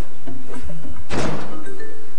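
Background music, with one loud thud of a door shutting a little past a second in.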